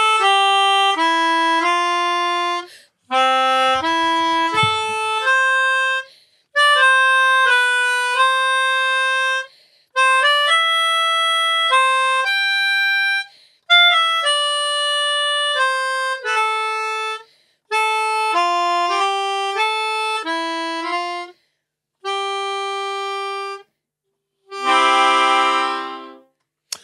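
A melodica played as a single-note tune in short phrases of about three seconds, each broken off by a brief pause for breath. Near the end several notes sound together as a closing chord.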